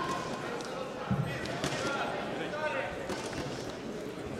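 Voices of people talking in a large sports hall, with a single dull thud about a second in.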